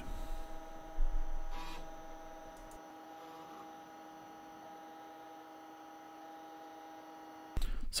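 Failing Conner CP341i hard drive in a Compaq DeskPro 386s giving off a steady humming tone, with a louder sound about a second in that fades away. The noise is the sign of a faulty drive that the computer cannot detect or boot from. The sound cuts off suddenly near the end.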